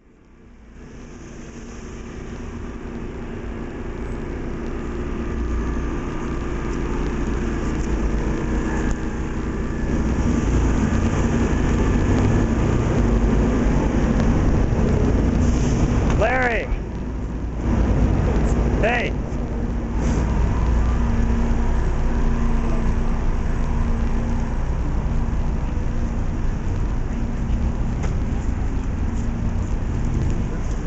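Street ambience: a steady rumble of road traffic and running vehicle engines, fading in over the first few seconds. About sixteen and nineteen seconds in come two short wavering higher-pitched sounds.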